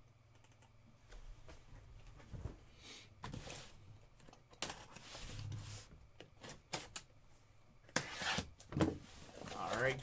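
A cardboard shipping case being handled and turned on a table: rubbing and scraping of cardboard with scattered knocks and clicks, loudest near the end.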